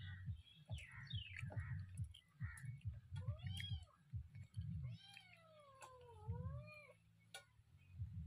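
A cat meowing twice: a short call about three seconds in and a longer, wavering one about five seconds in. Underneath are close-up chewing sounds and light clicks of fingers on a steel plate.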